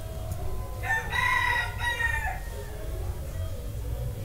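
One long animal call lasting about a second and a half, held on a steady high pitch and falling away at the end.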